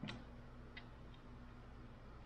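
Faint handling clicks, one just after the start and two softer ones near the middle, over a low steady hum in a quiet room.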